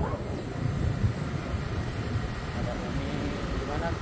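Riding on a moving motorcycle: steady wind buffeting on the microphone over the low running drone of the engine and road noise. A voice starts up near the end.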